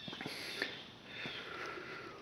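Faint breathing and a sniff close to the microphone, in a pause between spoken sentences.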